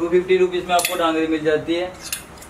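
Metal clothes hangers sliding along a metal garment rail, scraping with a drawn-out squeal that lasts almost two seconds. A sharp clink comes just under a second in.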